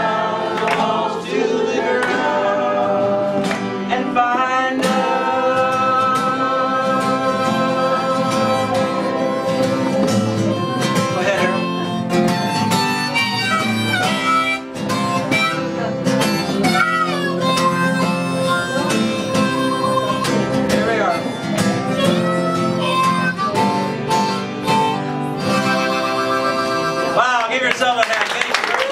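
Acoustic guitar strummed while a group of voices sings along to the chorus of a folk song. Near the end the song stops and applause breaks out.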